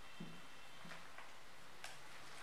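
Dry-erase marker writing on a whiteboard: a few short taps and scratches of the tip on the board, with a sharper click near the end.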